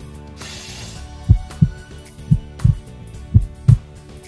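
Heartbeat sound, as heard through a stethoscope: three double thumps (lub-dub), about one a second, over gentle background music. A short hiss comes before the first beat.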